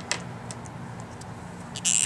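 Quiet room tone: a steady low electrical hum with a few faint clicks, and a quick breath in near the end.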